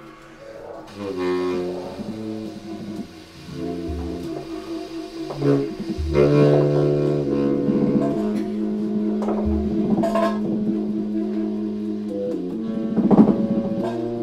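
Free-improvised jazz: baritone and alto saxophones holding long, overlapping low tones while a drum kit adds scattered hits and a few deep bass-drum thumps. It starts quiet and grows louder after a few seconds.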